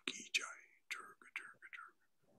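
Soft, whispered-sounding speech in short broken syllables, much quieter than the talk before it.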